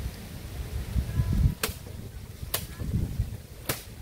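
Dry coconut fronds being handled, giving three short, sharp swishes about a second apart over a low rumble.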